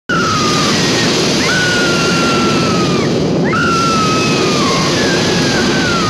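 A woman screaming in four long cries, each jumping up and then slowly falling, over the steady roar of a flamethrower's flames.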